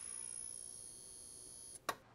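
Faint fading tail of an intro logo sting: a thin, high, steady tone with fainter tones beneath it dying away. It cuts off with a brief click just before the end.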